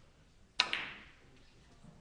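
A three-cushion billiards shot: the sharp click of the cue tip striking the cue ball, then almost at once the click of ball hitting ball, with a short ringing tail. A faint low knock follows near the end, typical of a ball meeting a cushion.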